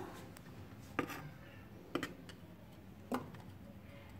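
Three light clicks about a second apart as a WD-40 spray can is handled, with faint background noise between them.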